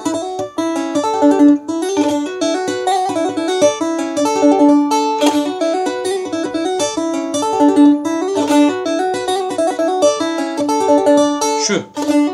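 Bağlama (saz) played in the şelpe style, struck and plucked with the bare fingers instead of a pick: a quick, continuous run of sharp-attacked notes over a recurring low note.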